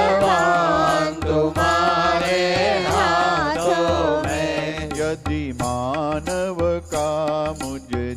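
Hindu devotional song (bhajan): a voice singing a melodic line over a steady hand-drum beat.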